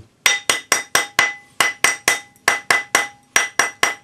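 Rawhide hammer striking a silver ring on a steel ring mandrel, about four sharp blows a second, each leaving the mandrel ringing with a high steady tone. The ring is being rounded up after soldering its join.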